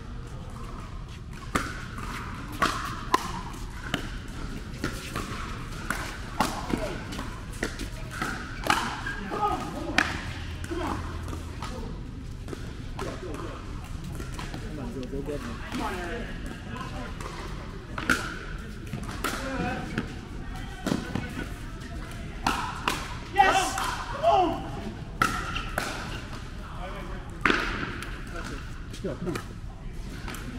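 Paddles hitting a plastic pickleball in a doubles rally: sharp pops at irregular intervals, with voices talking over the play in a large indoor hall.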